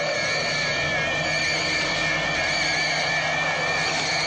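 Eerie electronic wailing sound effect of the space monster's cry: high, slightly warbling tones held over a low steady hum.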